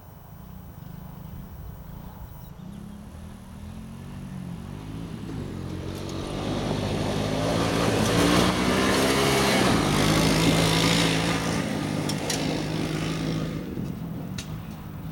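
A Honda ATC's engine running, faint at first and growing steadily louder as the machine comes down the gravel drive, loudest as it passes close in the middle of the stretch, then dropping away. The engine note shifts up and down with the throttle as it approaches.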